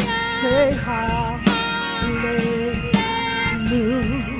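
Live gospel worship music: a woman singing long, wavering notes over organ and a drum kit, with a strong cymbal-accented hit about every second and a half and lighter regular beats between.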